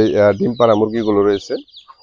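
A man talking over clucking chickens. His talk breaks off about one and a half seconds in, leaving only faint high peeps.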